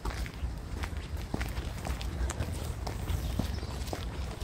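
Footsteps on a paved towpath: a loose string of light taps over a steady low rumble.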